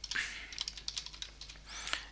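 Computer keyboard typing: a quick run of keystroke clicks.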